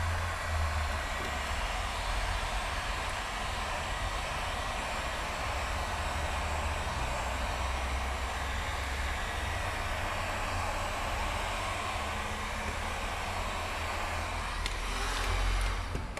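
Electric heat gun running steadily, a constant airy rush over a low hum, as it heats the headlight to soften the glue holding the lens. It stops near the end.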